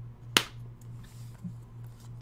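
A single sharp click about a third of a second in, as a trading card is handled and set down, over a low steady hum.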